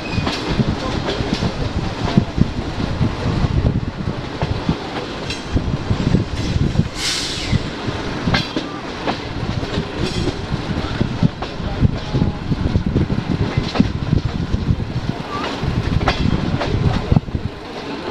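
Passenger train coach running along the track, heard from the side of the moving coach: a steady rumble of wheels on rail with irregular sharp clicks over rail joints. A brief hiss comes about seven seconds in.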